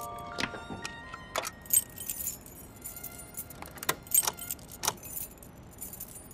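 A bunch of keys jangling and clinking in irregular short bursts as they are tried in a drawer lock that will not open.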